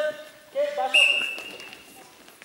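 Brief talk, then a referee's whistle blown once about a second in: a single steady high tone lasting most of a second, signalling the restart of play.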